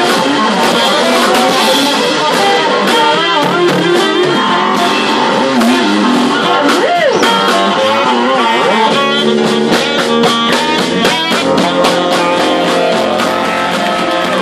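Fretless electric bass in a live blues band, plucked notes that glide up and down in pitch, with keyboards and drums behind.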